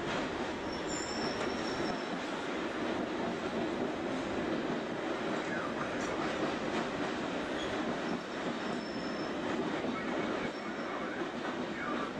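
London Underground train running through a tunnel: a steady rumbling roar of wheels on rail, with faint high wheel squeals about a second in and again near the end.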